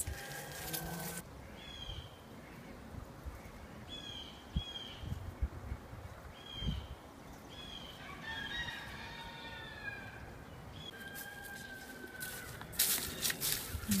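Birds chirping: short, high, downward chirps repeated at irregular intervals, clustering a little past the middle, with one longer held note near the end. A few soft low thumps come in between.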